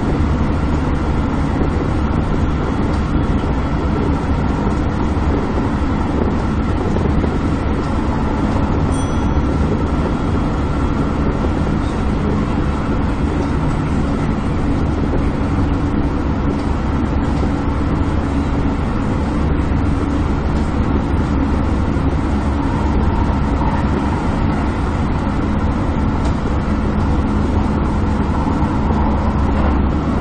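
Keisei 3050-series electric commuter train running steadily at speed, heard from inside the driver's cab: continuous running noise of wheels on rails with a faint constant hum.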